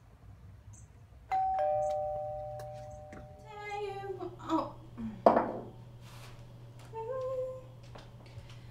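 Two-note ding-dong doorbell chime, a higher note then a lower one, ringing out and fading over about a second and a half. A voice follows, then a short sharp burst of noise about five seconds in, the loudest sound here.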